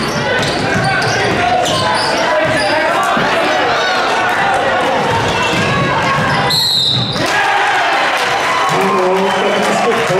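Basketball game in a gym: crowd voices and shouts over a basketball bouncing on the court, with a short referee's whistle blast about two-thirds of the way through.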